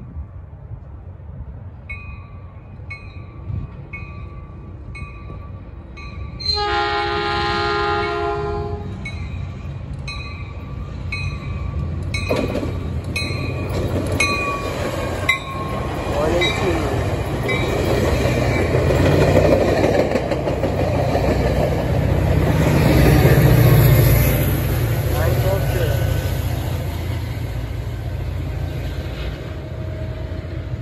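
Caltrain push-pull commuter train approaching and passing: a bell rings about once a second, then one horn blast of about two and a half seconds sounds. The passing bilevel cars' wheels rumble and rattle on the rails, building to the loudest point as the diesel locomotive pushing at the rear goes by, then easing off.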